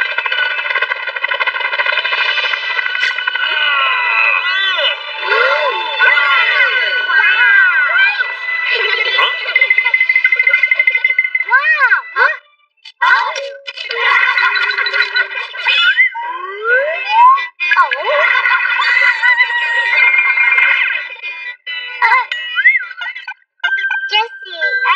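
Cartoon soundtrack: thin, high-pitched, unintelligible character voices over steady background music, with a short break about halfway through.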